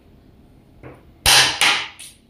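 Xiangqi pieces clacked down hard onto the board: two sharp knocks about a second in, a third of a second apart, each with a short rattle after it.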